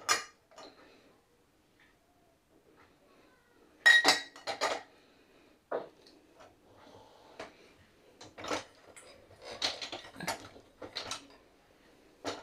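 Glasses and ceramic mugs clinking and knocking against each other and the dishwasher's wire rack as they are handled. The clinks are scattered: a ringing one about four seconds in, and a quick run of them in the second half.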